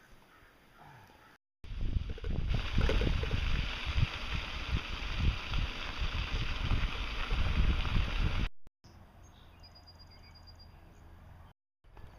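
Wind buffeting the microphone of a camera carried on a moving bicycle. It starts suddenly about a second and a half in and cuts off about eight and a half seconds in, with quiet outdoor background before and after it.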